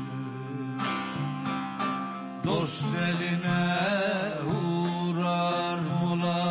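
Turkish folk music (türkü): a sustained, ornamented melody over held drone-like notes. It grows louder with a new entry about two and a half seconds in.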